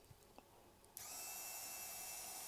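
A Proxxon IBS/E rotary drill/grinder, driven by a 100 W permanent-magnet DC motor, is switched on about a second in and then runs steadily with a thin, high-pitched whine and hiss.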